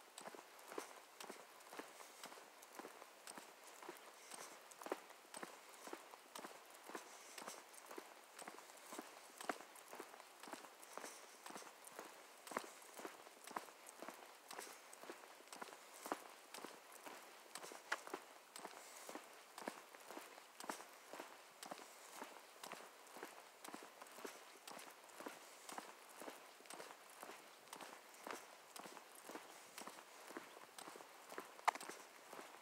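Faint footsteps of a person walking on a paved asphalt path, a steady pace of about two steps a second.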